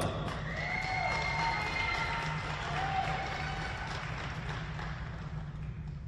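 Audience applauding and cheering, with a few shouts, dying away toward the end as the skater takes her position.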